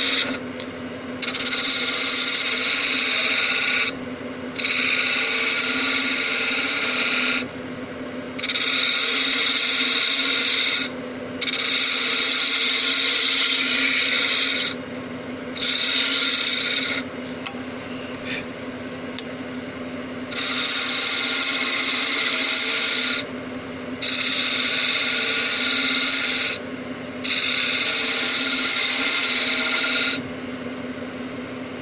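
Wood lathe turning an oak blank, its motor humming steadily while a turning tool cuts the spinning wood in repeated passes of two to three seconds each, about eight in all, with short pauses between cuts.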